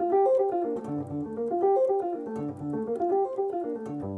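Electric guitar playing a Gm7 arpeggio pattern in an even run of single picked notes: root, fifth and ninth, then the third, seventh, root and third in the next octave, climbing and coming back down.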